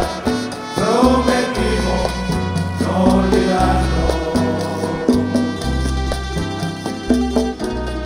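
A live folk band playing in a Latin dance rhythm: plucked and strummed guitars and lutes over a steady bass line, with congas, a scraped güiro and a melody carried by a voice.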